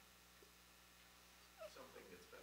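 Near silence: room tone, with a faint, distant voice beginning near the end, off the microphone, a congregation member calling out an answer.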